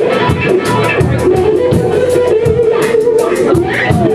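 Live blues-rock trio playing: electric guitar holding a long sustained note over bass guitar and drums, with a steady cymbal beat.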